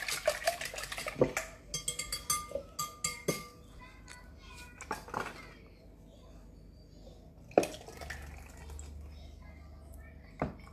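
Wire whisk beating an egg mixture in a bowl, a fast run of clicks against the bowl that stops about a second and a half in. Then scattered single clinks and knocks as the whisk and bowl are handled.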